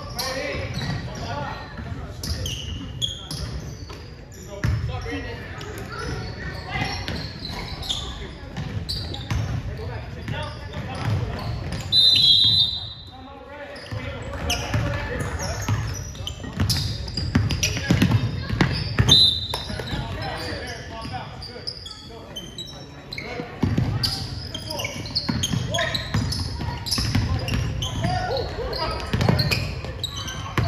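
Basketball being dribbled on a hardwood gym floor, its repeated bounces echoing in the hall, under indistinct voices of players and spectators. A short, loud, high referee's whistle blows about twelve seconds in.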